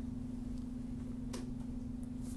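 Steady low electrical hum in the recording, with two faint computer mouse clicks as layer visibility is toggled.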